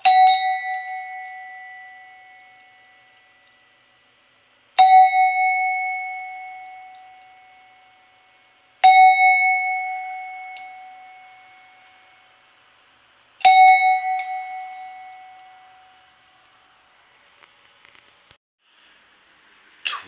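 Handmade copper bell struck four times, about four to five seconds apart, each strike ringing out clearly and slowly fading away.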